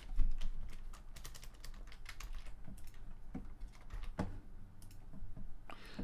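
Computer keyboard typing: irregular keystrokes, the loudest one just after the start.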